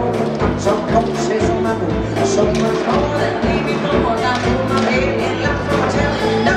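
Upbeat music from a circus band with drums and guitar, played with a steady beat and no break.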